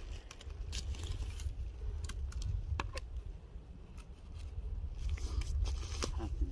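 Scattered sharp clicks and light crackles of a dry stick and twigs being handled as a stick is wedged into a dead black bear's jaws, over a steady low rumble.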